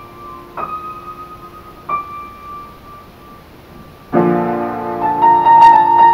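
Upright piano played: a few soft single notes ring out and fade in a quiet passage, then about four seconds in a loud, full chord is struck and a melody carries on above it.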